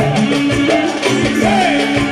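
Live band dance music: a clarinet plays an ornamented melody over a steady drum beat.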